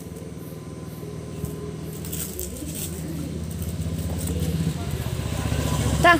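Small dog growling in play while mouthing at a hand, a low, steady growl that grows louder.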